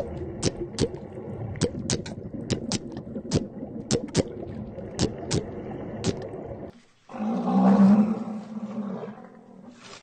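Underwater sound with a run of sharp clicks, about two or three a second, over a low steady rumble. After a sudden cut, an animal gives a loud roar-like call lasting about two seconds, which then fades.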